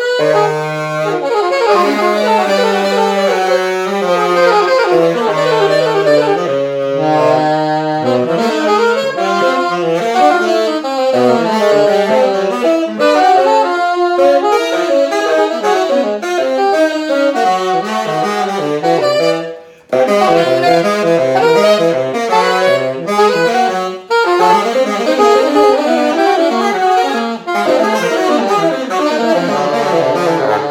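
A tenor and an alto saxophone playing a duet together. A series of long low notes is held under a moving upper line for the first several seconds, then both play winding lines. There is a brief break about two-thirds of the way through.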